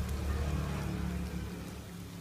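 Dense, steady crackling rustle, like light rain, of a mass of farmed crickets crawling and feeding over dry banana leaves and feed, with a steady low hum underneath.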